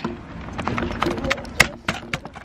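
A quick run of sharp clicks and knocks, several close together in the second half, over faint voices.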